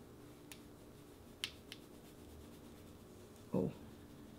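Fan brush dusting bronzer powder over the face: quiet, with only light brushing and a few faint ticks in the first two seconds over a low steady hum. A short exclaimed "oh" near the end.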